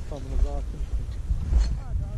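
A few words of talk among the hikers, with wind rumbling on the microphone throughout.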